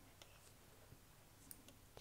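Near silence with a few faint clicks of metal knitting needles touching as a stitch is picked up and purled.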